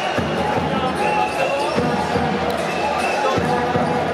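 Basketball game sound: a basketball bouncing on the wooden court a few times, among the voices of the crowd.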